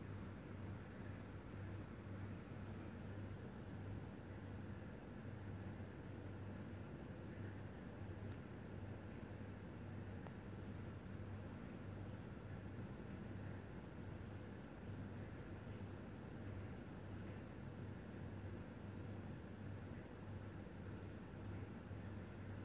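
Faint, steady hiss with a low hum: the room tone and microphone noise of the recording, with no other sound.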